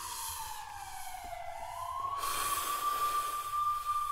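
Animated logo sound effect: a single whistling tone slides down, then rises back and holds steady, with a hiss joining about two seconds in.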